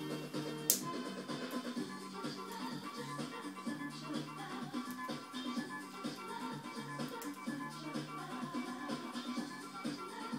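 Music with a bass line playing from a television, with one sharp click about a second in.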